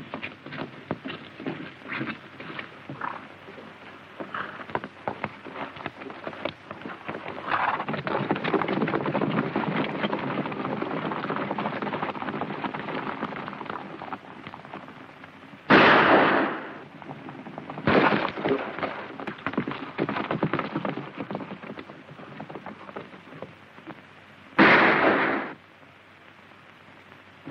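Hoofbeats of several horses galloping, a dense clatter that grows louder about a third of the way in. Three loud shots with echo ring out in the second half.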